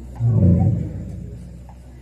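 A man's voice amplified through a microphone and loudspeaker: a low, drawn-out utterance starting about a quarter second in that fades over the following second.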